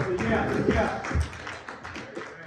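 A few light taps and a low thump about a second in, under faint voices.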